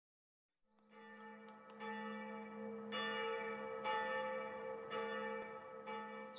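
Bell-like chimes over a steady low drone, starting about a second in and struck again about once a second, each strike brightening the ringing.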